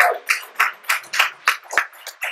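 A man laughing in a run of short, breathy bursts, about three a second.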